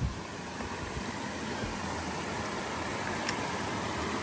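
Small rocky brook running over stones with a steady rush of water.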